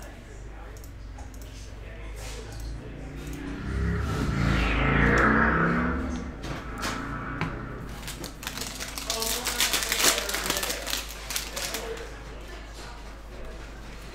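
A plastic-foil trading-card pack being torn open and its wrapper crinkled, a dense run of sharp crackles from about eight to eleven seconds in. It is preceded, about four seconds in, by a louder sound whose tone falls in pitch.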